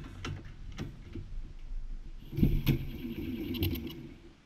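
Small single-cylinder four-stroke engine of a Honda Gorilla mini-bike, stalled while its carburettor is being adjusted: a few scattered clicks and knocks, then about two seconds in the engine catches and runs roughly for under two seconds before dying away at the end.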